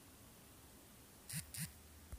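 Near silence with two brief soft noises, about a quarter second apart, a little past the middle.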